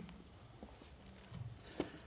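Quiet pause with a few faint taps and one sharper click near the end, fitting a key press on a laptop that advances the presentation slide.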